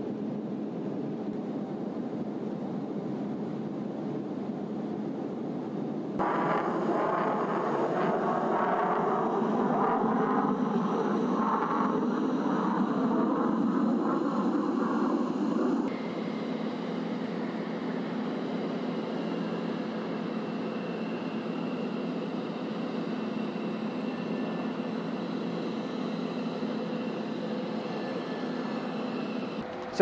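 Jet aircraft noise over a run of cuts. A steady in-flight rush of air and engine noise jumps to a louder stretch about six seconds in. From about sixteen seconds a quieter, steady F-16 jet engine whine follows as the fighter taxis, with high steady tones.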